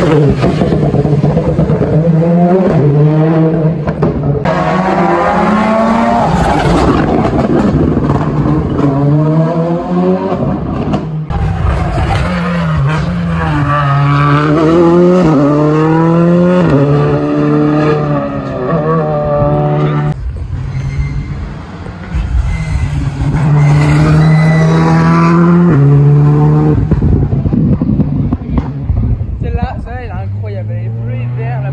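Rally car engines at full throttle as cars pass on the stage: each note climbs in pitch and drops back at every gear change, over and over. The sound comes in several short clips cut one after another.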